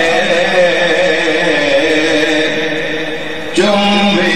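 Men's voices chanting a Shia mourning chant. The chant sags a little, then a new phrase starts abruptly and louder near the end.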